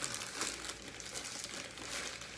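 Packaging rustling and crinkling as a parcel is opened and handled, faint, with scattered small crackles.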